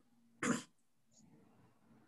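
One short, sharp cough about half a second in, followed by faint room noise.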